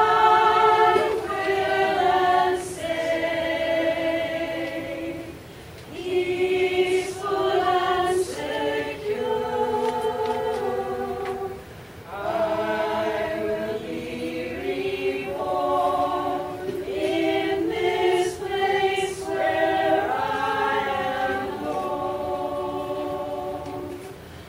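A women's community choir singing in harmony, sustained chords in phrases with short breaths between them, about five and twelve seconds in.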